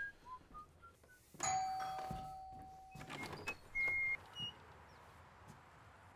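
A doorbell rings once, a single ringing tone that starts suddenly and fades away over about a second and a half.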